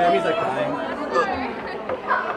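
Several people talking and chattering at once, their voices overlapping with no clear words.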